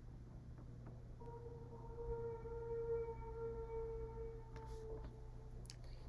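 A faint, steady pitched tone with several overtones starts about a second in and lasts about four seconds, over a constant low electrical hum.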